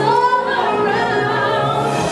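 A woman singing a show tune into a handheld microphone over a backing track, her voice holding and bending long notes above sustained low accompaniment.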